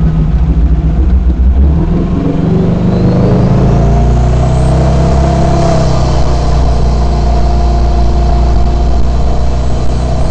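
Jet boat engine accelerating hard, its pitch rising over the first few seconds and then holding steady at speed, with water rushing from the jet wake.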